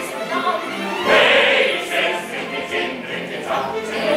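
Full stage-musical cast singing together as a chorus over the show's music, heard from the auditorium. The ensemble swells loudest about a second in.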